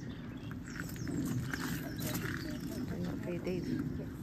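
Indistinct background chatter of several people's voices, steady throughout, with no clear words.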